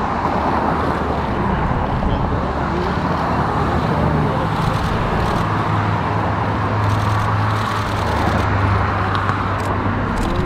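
Steady road traffic noise with a low engine hum that grows stronger in the middle.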